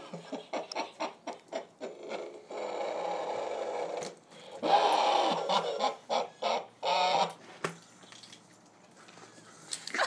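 A woman laughing through an Optimus Prime voice-changer helmet, the laughter coming out as choppy, electronically distorted pulses that sound like clucking. There are longer stretches about three and five seconds in, and it dies down near the end.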